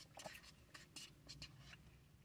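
Near silence: quiet vehicle-cabin room tone with a few faint, brief scratchy ticks.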